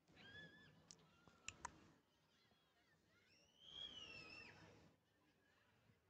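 Very faint outdoor quiet broken by two bird calls: a short one at the start and a longer one that rises and falls from about three and a half seconds in. A few sharp clicks fall between them.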